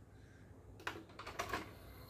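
Clicks from a Victor XL-V313 CD player as it is operated: one sharp click a little under a second in, then a few lighter clicks about half a second later.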